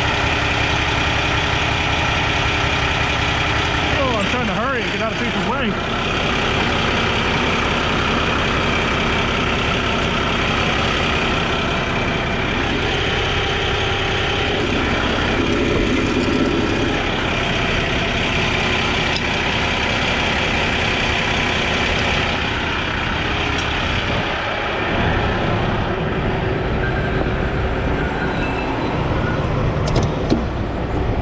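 Heavy diesel truck engine idling steadily close by.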